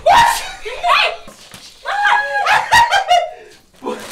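People laughing and exclaiming in a small tiled bathroom, in several loud bursts with short gaps, along with a few short knocks.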